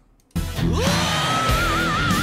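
Hard rock music cuts in abruptly about a third of a second in: a male rock singer slides up into a long high belted note that wavers with vibrato, over electric guitar and a full band.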